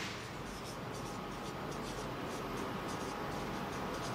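Marker pen writing on a whiteboard: a quick run of short scratchy strokes as letters are formed, over a steady low room hum.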